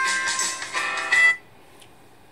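A song played through an iPhone 7's built-in loudspeakers in a phone speaker test; it cuts off suddenly about a second and a half in, as playback is stopped.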